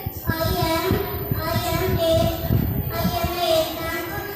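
A young boy's voice singing into a microphone in long held notes, in two phrases with a short break about three seconds in.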